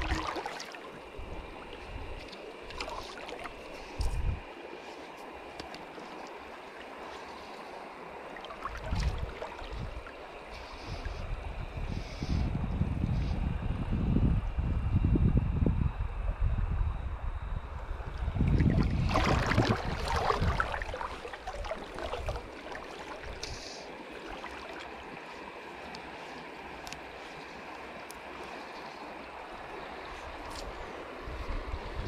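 River water flowing steadily over a rocky bed. Through the middle stretch, low rumbling gusts of wind buffet the microphone.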